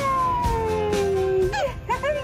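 A high voice giving one long call that slides down in pitch, then a few short squeals near the end, over steady background music.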